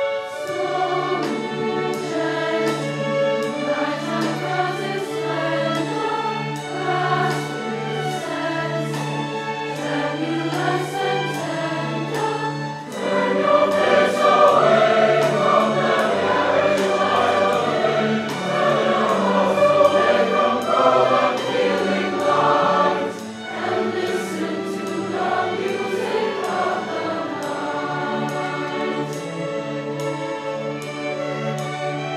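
Large youth choir singing with a string orchestra over a steady pulse. The music swells to a loud, full passage about 13 seconds in, then drops back softer about 23 seconds in.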